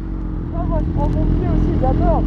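BMW S1000RR's inline-four engine idling steadily, with a faint voice over it.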